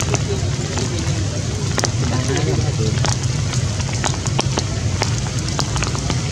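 Rain falling steadily, with frequent irregular sharp ticks of drops over a constant low rumble of wind on the microphone.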